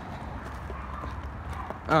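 Footsteps on a pavement sidewalk during a walk, faint light steps over a steady low rumble of outdoor background noise. A voice starts right at the end.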